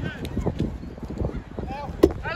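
Wind rumbling on the microphone, with a few light knocks and faint shouts from across a football pitch.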